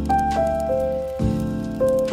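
Music: sustained chords with a melody stepping from note to note above them, the chord changing about a second in.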